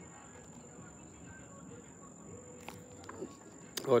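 Quiet outdoor background with a steady, high-pitched drone that typically comes from insects. A short, level hum comes in a little past the middle, and a man's voice starts right at the end.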